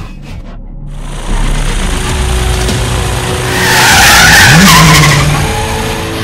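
Drift car sliding with its tyres screeching, building to the loudest squeal about four seconds in, with a brief rise in engine revs near the middle. A few sharp clicks come at the very start.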